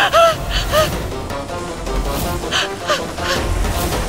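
Dramatic background music: sharp percussive hits with short swooping pitched notes that rise and fall, over a low rumbling bed.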